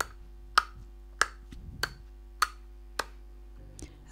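Regular ticking: a sharp, short click about every 0.6 seconds, over a faint steady hum.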